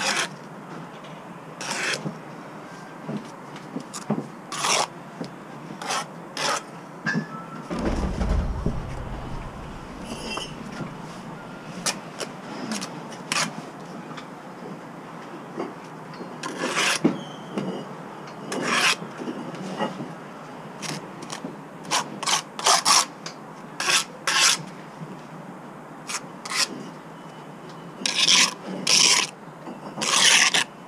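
Steel brick trowel scraping wet mortar as facing bricks are bedded and the squeezed-out mortar is cut off the joints: a run of short scrapes, coming thick and fast in the second half. A low rumble about eight seconds in.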